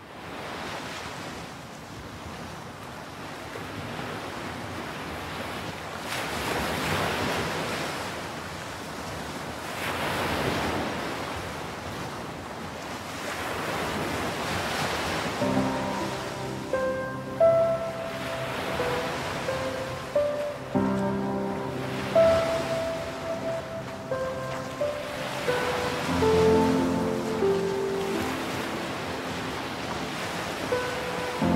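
Sea surf washing ashore, fading in from silence and swelling every three to four seconds. About halfway in, music with sustained melodic notes comes in over the surf.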